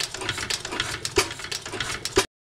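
A 1911 Tangye AA single-cylinder petrol stationary engine running, with a rapid patter of light mechanical clicks and a sharp firing stroke about a second in.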